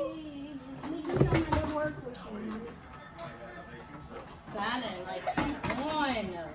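Indistinct voices, the speech not made out, with a short knock or bump about a second in.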